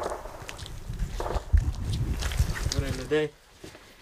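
Hurried footsteps through dry undergrowth, with irregular low thumps and rustling as the ground is crossed on foot. A man's voice says a few words about three seconds in, then the sound drops away.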